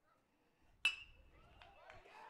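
A metal baseball bat hits a pitched ball once, about a second in: a single sharp ping with a short ring, putting a ground ball in play. Faint voices follow.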